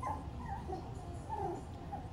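Three-week-old puppies making several short, faint whimpers and squeaks.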